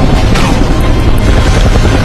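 Film soundtrack: music mixed over the loud, steady noise of a helicopter's engines and rotor.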